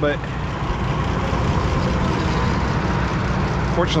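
Oliver 880 tractor engine idling steadily.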